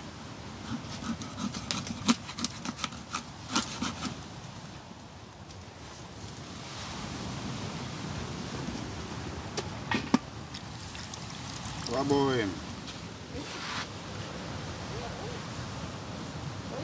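Knife cutting and scraping a fish on a wooden cutting board: a run of quick clicks and scrapes in the first few seconds, then a few sharp ticks later on. A brief voice sound comes about three quarters of the way through, over a steady background hiss.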